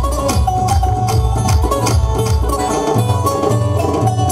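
Instrumental break in a live church devotional song: electronic keyboards play a quick melody over tabla and a steady beat.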